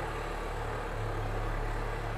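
Steady low background hum with faint hiss, unchanging throughout: room tone with no distinct event.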